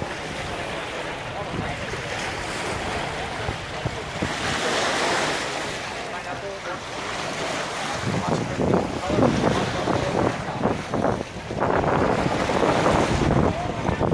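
Small sea waves washing and splashing against rocks along the shore, with wind buffeting the microphone. A swell of surf comes about four to six seconds in, and the second half is louder and choppier.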